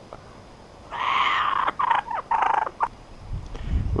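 Kookaburra giving a harsh, throaty chuckling call in two main bursts while its neck is being scratched.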